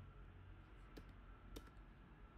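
Two computer keyboard keystrokes about half a second apart, likely Enter pressed at the empty-passphrase prompts, over a faint low room hum.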